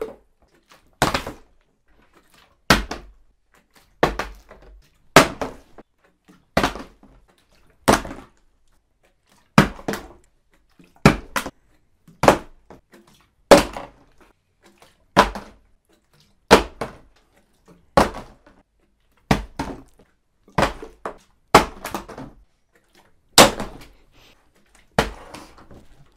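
A steady series of loud knocks or bangs, about one every second and a half, some twenty in all, each with a short ringing tail, like hammering.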